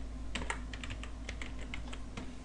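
Typing on a computer keyboard: a run of quick, irregular key clicks over a faint low hum.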